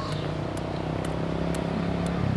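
A motorbike engine running off-screen, its steady hum slowly growing louder. Light footsteps click about twice a second over it.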